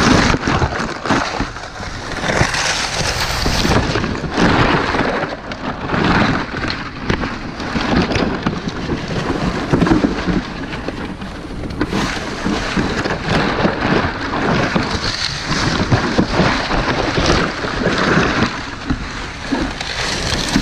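Dry palm fronds rustling, crackling and scraping loudly against the camera as the climber moves through the crown, in irregular surges every second or two.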